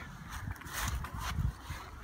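Soft, irregular low rumbling with a few faint knocks from a handheld phone carried outdoors: handling and footstep noise.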